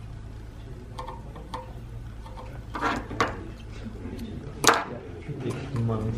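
Light handling noises at a workbench over a steady low hum: a few soft taps and rustles, and one sharp click a little before five seconds in.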